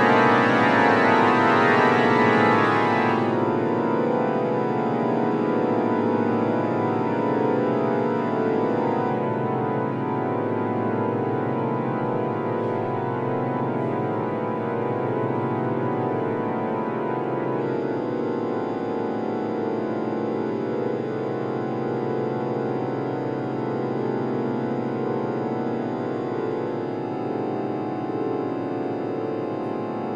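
Organ playing dense, held chords of many tones at once. The highest tones drop away about three seconds in, and the chord changes again near nine and near seventeen seconds.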